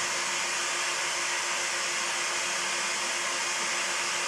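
Steady, even hiss with a faint low hum underneath and no other events.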